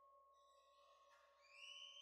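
Faint ringing of singing bowls: steady tones linger, and about one and a half seconds in, higher ringing tones swell in, bending slightly up before holding steady.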